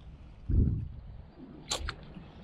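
A cast with an ultralight spinning rod and reel: a brief low buffet on the microphone about half a second in as the rod swings, then two sharp clicks near the end, typical of the reel's bail being snapped shut after the cast.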